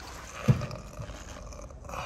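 A single dull thump about half a second in, followed by faint rustling noise.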